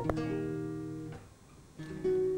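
Acoustic guitar chord plucked and left to ring, fading away over about a second, then a brief pause before another chord is struck near the end.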